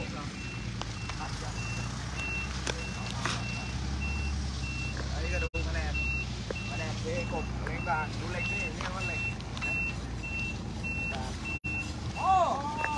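A heavy vehicle's reversing alarm beeping steadily, about two high beeps a second, over the low, steady sound of its engine running.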